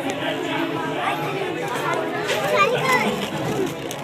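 Many voices talking over one another at once, children's voices among them.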